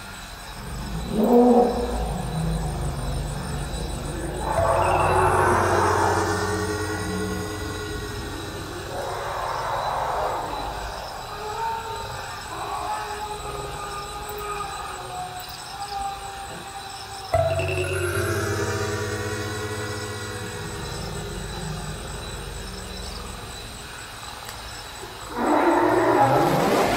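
Electric komungo, the Korean plucked zither, played through electronic effects: a plucked attack about a second in, then long low sustained tones with swooping, wavering pitches above them, and a new sustained tone entering suddenly about two-thirds of the way through.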